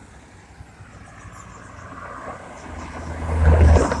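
A small hatchback car driving past close by. Its engine and tyre noise swell to a loud peak near the end as it passes, over fainter traffic farther up the road.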